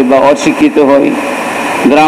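A man preaching in Bengali, speaking for about a second, pausing briefly, then starting again near the end, with a steady faint hum underneath.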